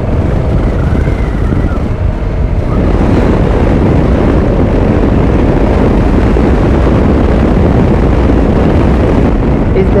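Wind rushing over the microphone of a motorcycle on the move, with the engine running underneath. It gets louder about three seconds in as the bike speeds up.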